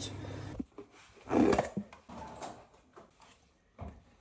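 Plastic lid of a peanut butter tub being pulled off and handled: one loud pull of under half a second about a second and a half in, a few softer plastic sounds after it, and a short sharp click near the end.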